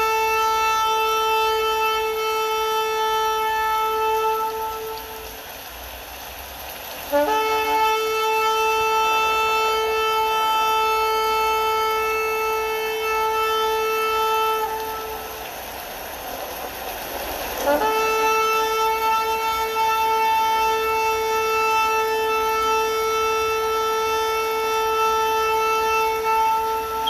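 Shofar sounding long, steady blasts on a single note, three in turn with short gaps between them.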